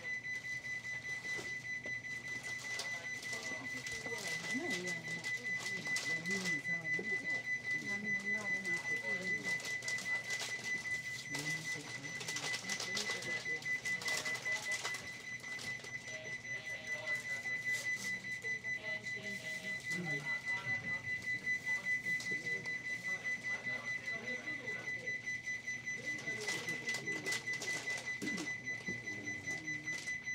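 A high electronic beep repeating rapidly and evenly without a break, with muffled voices underneath.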